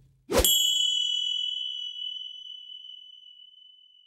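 A single bright, bell-like ding, struck about half a second in and ringing on while it slowly fades over the next three seconds: the chime of a channel-logo reveal sound effect.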